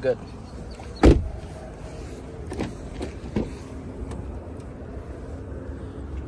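A car door shutting with one heavy thump about a second in, followed by two lighter knocks or clicks, probably from the rear door latch and handle, over a low steady background rumble.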